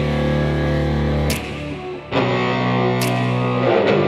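Background rock music with held distorted electric guitar chords and a few sharp hits; the music drops briefly about a second and a half in, then comes back.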